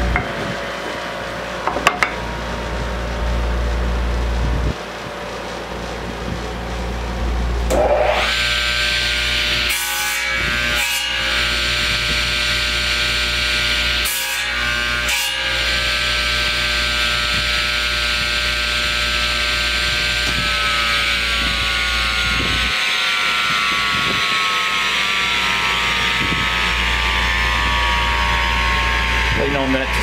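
Table saw cutting into a wooden spindle: about 8 seconds in the blade bites and a loud high whine with a gritty hiss sets in, with a few knocks, and its pitch sinks slowly in the second half as the blade works through the wood in small nibbling passes.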